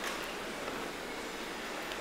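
Steady hiss of background noise, with no distinct event in it.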